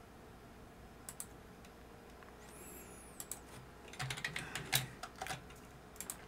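Typing on a computer keyboard: a couple of keystrokes about a second in, then a quick run of keystrokes over the second half.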